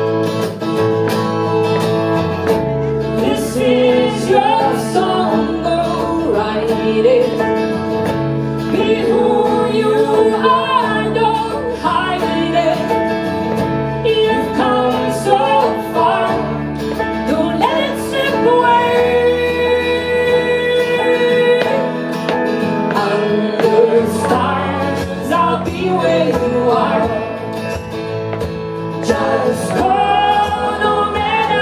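Live band music with a woman singing the lead vocal into a microphone, backed by instruments, with low bass notes coming in about two and a half seconds in.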